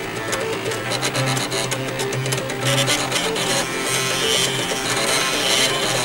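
An array of eight floppy disk drives whose head stepper motors are driven at audio pitches, playing a tune together in buzzy pitched notes over a pulsing low bass line.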